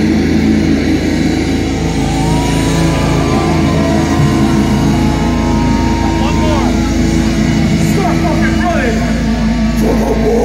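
A sustained low drone from the band's guitar and bass amplifiers, with held notes ringing out between song sections. Crowd shouting and whooping over it, with a cluster of yells near the end.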